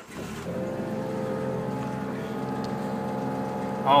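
A 2.5-litre four-cylinder engine, the type used in Jeeps, starting up right at the beginning and then idling steadily, heard from inside the cab.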